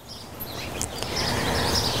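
Outdoor background noise: an even rushing hiss that grows louder over the two seconds, with faint bird chirps.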